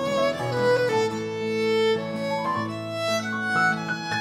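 Violin music: a melody of long held notes over a low, steady accompaniment.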